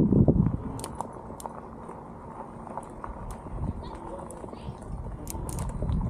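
E-bike rolling along a gravel path: a steady low rumble of the tyres and riding noise, with scattered sharp ticks and a brief louder burst right at the start.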